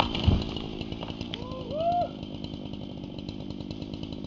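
Chainsaw idling steadily, with a low thud at the very start and a short rising-and-falling call about a second and a half in.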